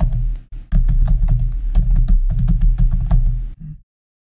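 Computer keyboard typing: a fast, uneven run of key clicks with a dull thump under each stroke. It stops abruptly just before the end.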